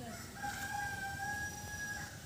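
A rooster crowing: one long crow at a steady pitch, starting about half a second in and lasting nearly two seconds.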